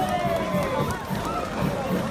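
Crowd of spectators at a bull-riding arena, with voices shouting and calling out over a general din, and band music playing underneath.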